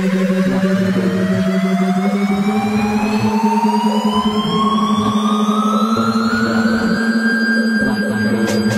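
Electronic dance music in a build-up: a tone rises steadily in pitch over a held low note and levels off near the end.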